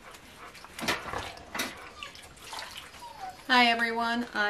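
Crockery being washed by hand in a water-filled basin: a few clinks of dishes and some splashing and sloshing of water. A woman's voice begins near the end.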